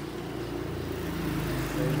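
A low rumble with a steady hum that swells about half a second in, like a motor vehicle passing.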